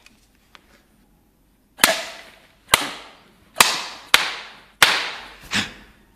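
A series of about six sharp smacks, a little under a second apart, each dying away quickly: punishment strikes landing on a boy's closed fist.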